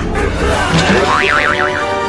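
A cartoon comedy sound effect: a springy, boing-like tone whose pitch wobbles rapidly up and down for about half a second, past the middle. Music with sustained notes comes in under it.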